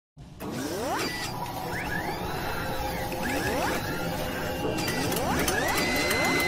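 Sound effects for an animated news-logo intro: mechanical whirring and clicking of moving parts, with rising sweeps every second or two. A steady high tone comes in near the end.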